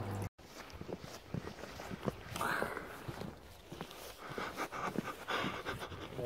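Footsteps on the ground with breathing: irregular soft steps and a couple of breaths, after a brief dropout near the start.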